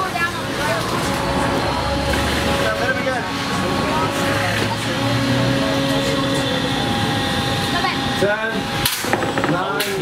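Whine of the small electric drive and weapon motors of 1 lb antweight combat robots with vertical spinners, its pitch shifting as they drive and spin, under the chatter of spectators. There is a sharp knock about nine seconds in.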